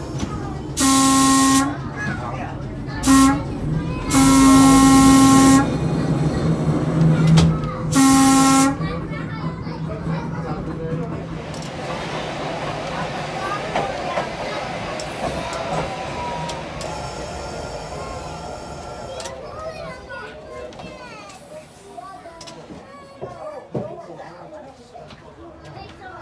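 1926 Brill trolley car's air whistle sounding four blasts for a grade crossing: long, short, long, then a shorter one. After that, the car's running noise and rail clatter as it rolls through the crossing and on.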